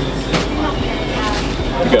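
Steady café room noise with a low hum and faint voices, broken by two short clicks or rustles, one early and one past the middle.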